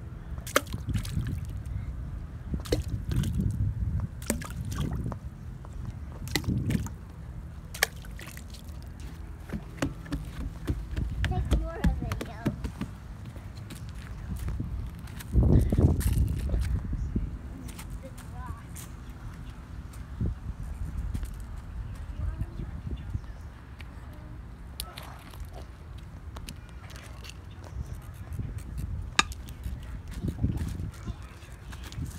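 Water sloshing against a dock, with many sharp clicks and knocks of stones being picked up and thrown, and a steady low rumble of wind and handling on the phone's microphone that swells halfway through. Faint voices come and go.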